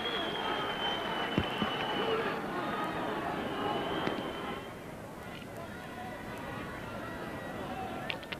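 Stadium crowd cheering and calling out after a point is scored, louder for the first few seconds and then settling to a murmur. A high steady tone sounds twice in the first half, and there is a single knock about a second and a half in.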